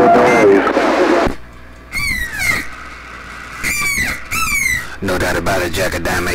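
CB radio receiver: a voice breaks off, then three short squealing tones, each sliding down in pitch, come through the speaker about two, three and a half and four and a half seconds in. Voices resume near the end.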